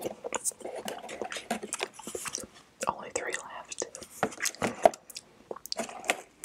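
Close-miked chewing of mango mochi ice cream: soft, sticky mouth sounds with many short clicks and lip smacks.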